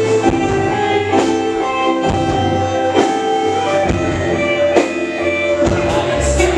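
Live indie rock band playing: electric guitar, Roland keyboard and drum kit, with held keyboard and guitar notes over a drum hit a little under once a second.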